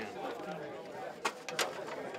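A metal serving spoon clinking lightly against a plastic plate and an aluminum stockpot while beans are ladled out, three quick clicks in the second half, over low background voices.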